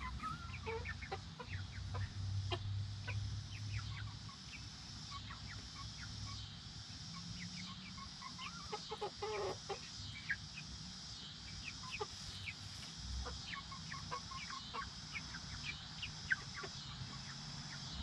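Silkie hens and chicks clucking softly with short calls while pecking at grain on the ground, with a run of lower clucks about nine seconds in. A steady, regularly pulsing high buzz runs in the background.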